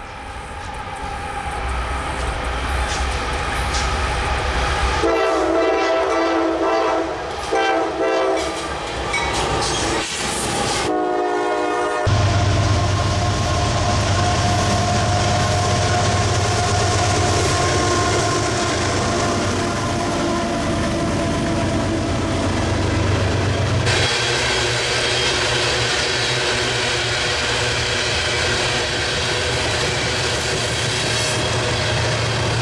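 A freight train's diesel locomotive horn sounds a long, broken blast and then a short one as the train approaches. The locomotives then pass with their diesel engines running, followed by freight cars rolling by with a clickety-clack of wheels over rail joints.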